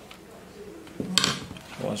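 Handling noise from a laptop and a screwdriver on a wooden desk: a sharp knock about halfway through as the tool is put down and the laptop is picked up, after a quiet first second.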